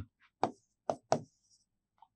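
A pen knocking against a writing board as characters are written: three short taps, the first about half a second in and two close together near the one-second mark, with a faint scratch of the pen after them.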